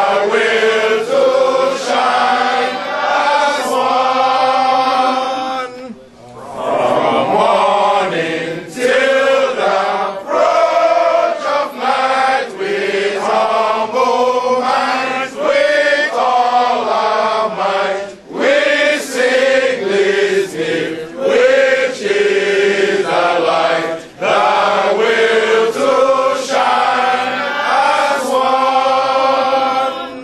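A group of men singing a song together from booklets, with brief breaks between phrases about six, eighteen and twenty-four seconds in.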